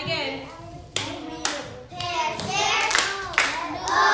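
A few sharp hand claps, one about a second in, another half a second later and a loud one near the end, over children's voices talking to each other.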